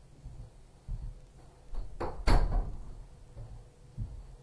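A room door being shut: a loud thud as it closes, a little over two seconds in, with a couple of softer knocks before it.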